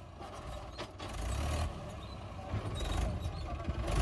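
Mahindra 585 DI XP Plus tractor's four-cylinder diesel engine working under load as the tractor climbs a sand dune. The engine sound gets louder about a second in and again near the end.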